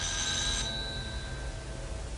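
Electric doorbell ringing as its button is pressed, a short high ring that cuts off about half a second in and leaves a faint fading tone.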